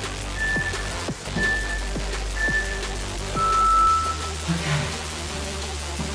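Interval timer countdown: three short high beeps a second apart, then one longer, lower beep marking the end of the work interval and the start of the rest. Electronic background music plays underneath.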